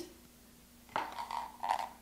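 Black plastic coffee-brewer parts picked up and handled on a countertop: a sharp click about a second in, then light scraping and rattling.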